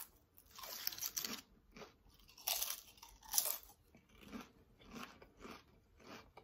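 Close-miked crunching of crisp homemade Cajun chips being chewed: a few loud crunches in the first half, then softer chews about twice a second.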